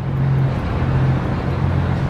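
Steady low hum with an even background rush: outdoor urban ambience, with no single event standing out.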